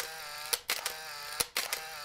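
Animated end-card sound effects: a steady electronic tone with three sharp clicks partway through.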